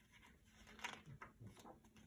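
Near silence: room tone with a few faint, short clicks and rustles.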